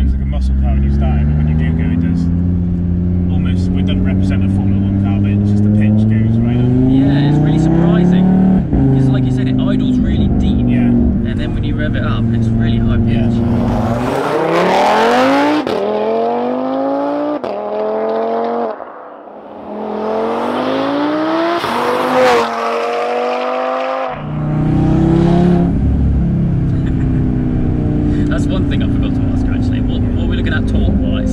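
Stage 3 tuned Audi RS3 saloon's turbocharged five-cylinder engine accelerating hard, rising in pitch and dropping sharply at each upshift. It is heard from inside the cabin, then from the roadside as the car pulls away through the gears, about 14 to 24 seconds in, then from inside the cabin again.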